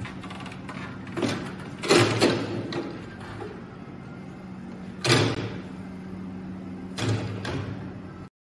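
Clunks and thumps from a Scoozy mobility scooter being handled and rolled off a test rig down a ramp: a few separate knocks, the loudest about two seconds in and another about five seconds in, over a steady low hum.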